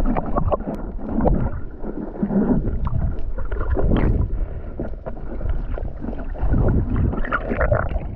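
Muffled underwater sound from a submerged action camera: water rushing and gurgling against the housing as the diver moves, with irregular knocks and bumps.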